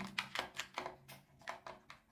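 A quick run of light plastic clicks and taps as small plastic containers are set down and shuffled into place on a shelf, thinning out toward the end.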